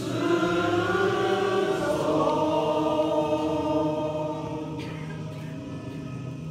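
A large group of men singing together in unison, holding long notes; it is loudest for the first four seconds, then softer.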